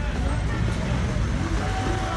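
Street-market ambience: other people's voices in the background over a steady low rumble of traffic or wind.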